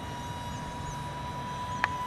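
Wind rumbling on the microphone, with a steady high whine running under it and a single sharp click near the end.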